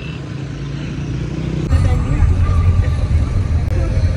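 Open-air street traffic noise, then about a second and a half in an abrupt change to the steady, louder low rumble of a car's engine and road noise heard from inside the moving cabin.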